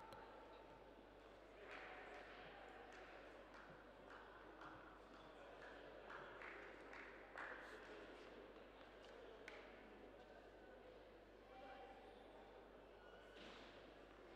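Near silence in an indoor hall: faint, low voices, with a few light knocks.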